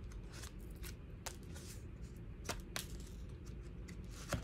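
Tarot cards being handled on a tabletop: irregular, light clicks and slides of cardstock as cards are touched, picked up and laid down.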